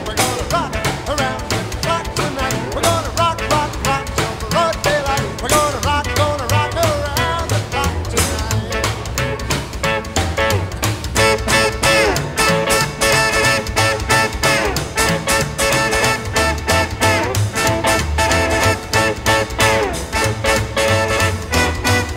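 Upbeat 1950s-style rock and roll music with no singing, over a steady driving beat.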